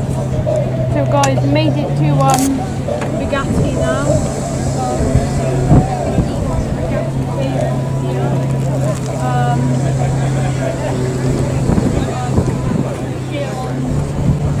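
Background chatter of people's voices over a steady low hum that shifts slightly up in pitch about two seconds in.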